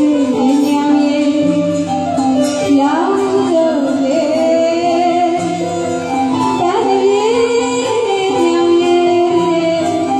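A woman sings a Burmese song live into a microphone, accompanied by violin and electronic keyboard. Her gliding, ornamented vocal line comes in strongly about three seconds in, over steady held notes from the band.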